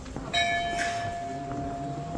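A temple bell struck once, about a third of a second in. Its higher ringing tones die away within half a second while one steady hum rings on.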